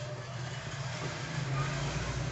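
A steady low mechanical hum with an even hiss over it, growing slightly louder after about a second and a half.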